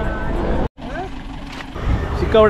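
Crowd chatter of a busy open-air market, cut off abruptly under a second in. After the cut, a quieter low outdoor rumble with a few scattered voices.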